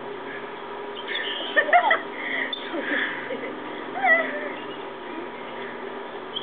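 Short high-pitched squeals from girls' voices, a cluster about one and a half seconds in and another about four seconds in.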